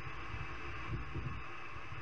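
A steady hiss with a low hum underneath, the background noise of the recording, in a pause between spoken lines.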